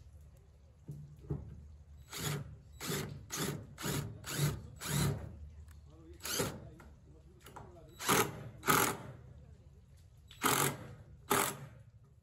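Cordless drill driving screws into a redwood frame in about a dozen short bursts, each under a second, the loudest ones near the end.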